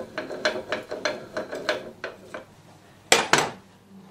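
Hand wrench being worked on a steel steering-box part, giving an uneven series of metal clicks, about three a second, that stops a little past halfway. Two sharp metal knocks follow close together near the end.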